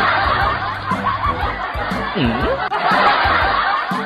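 Many voices snickering and chuckling together in a dense, continuous laugh-track effect, with music underneath.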